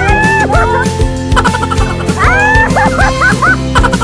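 Background music with a bass line and a steady beat, with short, high, arching yelp-like sounds repeating over it.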